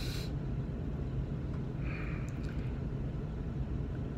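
School bus engine idling, a steady low rumble heard from the driver's seat inside the bus, with a faint brief sound about two seconds in.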